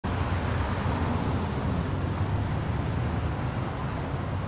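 Steady low rumble of distant road traffic, an unbroken urban night ambience with a faint high whine that fades out about halfway.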